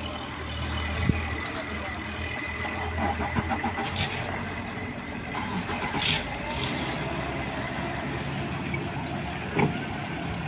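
Suzuki 175 outboard motor running as a speedboat pulls away, a steady low engine hum, with a few short bursts of hiss and a couple of sharp knocks over it.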